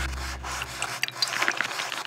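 Scratchy strokes of writing on paper, a writing sound effect that gets busier about a second in. A low held note from the music fades out in the first second.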